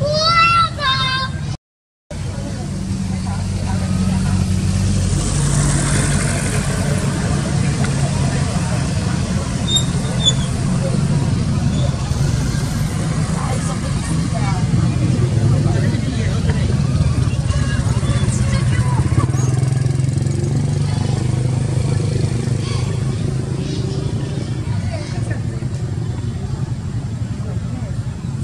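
Baby monkey giving shrill, rising squeals for the first second and a half, then after a short break a steady low motor-vehicle engine hum that runs on, with a few faint calls over it.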